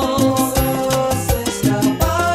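Salsa romántica music in an instrumental passage with no vocals: a bass line and steady percussion under held chords.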